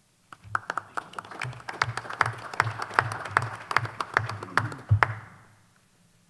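Applause from a small group of people: separate claps that can be picked out, starting just after the beginning and dying away about five seconds in.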